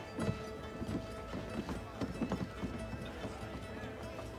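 Frontier street bustle: horse hooves clopping and faint background voices, with thin sustained music tones underneath.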